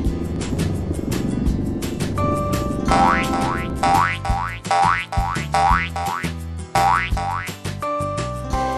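Cartoon boing sound effects for bouncing balls: a quick run of short rising springy tones, about two a second, starting about three seconds in, over background music.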